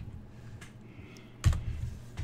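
Typing and clicking on a computer keyboard, with one louder knock about one and a half seconds in.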